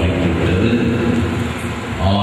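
A man speaking or intoning a prayer through a public-address microphone, with the echo of the loudspeakers; the voice dips slightly near the end.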